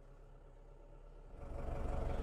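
Lovol 504 tractor's diesel engine idling, heard from inside the cab: a faint, steady low hum that grows markedly louder and rougher about one and a half seconds in.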